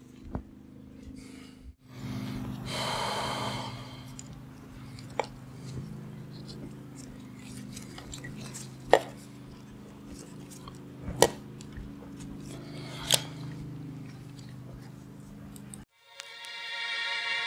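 Gloved hands fitting parts onto an outboard engine: a rustle of handling about two and a half seconds in, then four sharp clicks and knocks of parts being seated, spread a few seconds apart, over a steady low hum.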